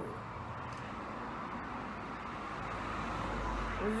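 A steady rushing noise with no speech over it, growing slightly louder with a low rumble near the end, in the manner of a road vehicle passing.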